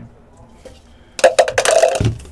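Dice rattling as they are shaken in a plastic cup, a rapid loud clatter starting about a second in.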